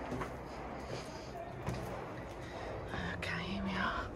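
A person's voice in a brief, low, hum-like murmur about three seconds in, over faint, steady background noise.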